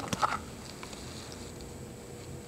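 Fist percussion over the kidneys at the costovertebral angle, testing for CVA tenderness: a few soft thumps of a fist striking a hand laid flat on the lower back, within the first half-second, then quiet room tone.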